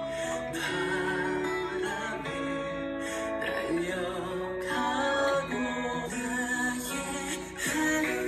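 A male voice singing a slow Korean folk song in long held notes over acoustic guitar. Near the end it cuts to another song.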